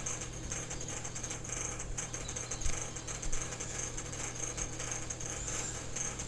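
Quiet room tone: a steady low electrical hum with faint hiss, and a couple of small faint clicks near the middle.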